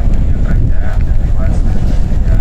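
Wind buffeting an outdoor microphone, a loud, steady, rough low rumble, with faint voices underneath.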